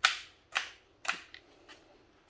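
Sharp mechanical clicks from a Festool TDC 18/4 cordless drill being handled and its controls switched: three crisp clicks about half a second apart, then two fainter ones.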